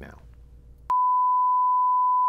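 A television test-pattern reference tone: one steady, pure, high beep at a single pitch that comes on suddenly about a second in and holds, loud. It is the tone that goes with colour bars, marking the programme as stopped.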